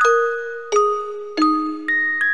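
Short outro music jingle of bell-like mallet notes: struck tones ringing and fading in a repeating pattern, about two notes a second.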